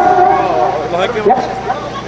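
Speech: a man asks a short question, "¿Ya?", and laughs.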